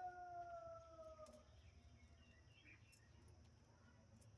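Faint, near-quiet recording: one long, slightly falling animal call in the first second and a half, then only a few light taps from pigeons pecking at grain on a dirt floor.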